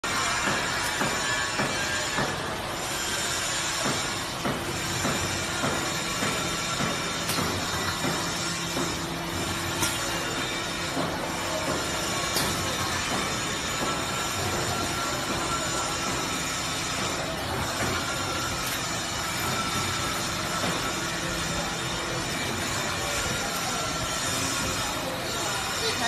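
Automatic carton erector and case packing line running: a steady mechanical din with a low hum and occasional sharp clicks and knocks from the machinery.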